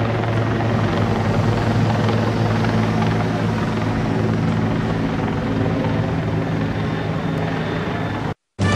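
Helicopter running steadily overhead, a loud, unchanging low drone.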